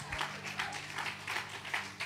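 Audience clapping: light, scattered applause.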